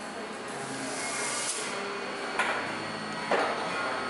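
Two sharp snips about a second apart from hand cutters working on a hub motor's cable, over steady workshop room noise.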